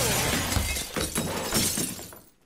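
Glass shelves of a trophy cabinet shattering, with shards and metal trophies crashing and clattering onto the floor. The clatter thins out and dies away near the end.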